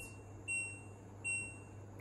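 Two short, high electronic beeps about three-quarters of a second apart from the control panel of an LG WM F2J6HGP2S washer-dryer. Each beep confirms a press of the temperature button, stepping the wash temperature from 20°C up to 40°C.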